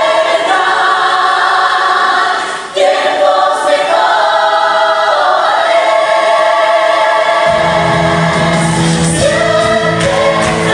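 A musical-theatre cast, mostly women's voices, singing together as an ensemble. The low accompaniment drops out after the start and comes back in about seven and a half seconds in.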